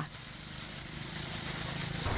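Steady low rumble with a light hiss above it, slowly getting louder; no distinct event stands out.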